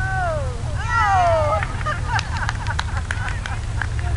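Two drawn-out animal calls, each falling steeply in pitch, one at the start and a louder one about a second in, followed by a few scattered sharp clicks, over a steady low rumble of wind.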